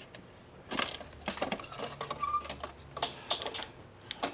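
Fishing lures and plastic tackle-tray compartments clicking and rattling as they are handled and sorted: a string of light, irregular clicks.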